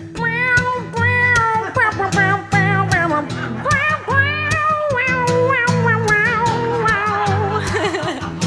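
A woman sings a wordless vocal solo, in place of an instrumental break, into a handheld mic, her voice sliding and wavering in pitch. Steadily strummed acoustic guitar accompanies her.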